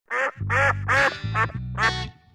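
Five loud duck quacks in a quick series, each dropping in pitch, over the start of an intro music track whose low bass note comes in about half a second in.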